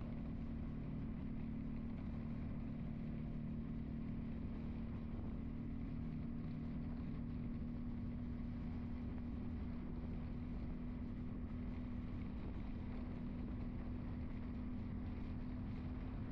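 A car driving steadily along a road: the engine runs at a constant speed with a steady low drone over road noise.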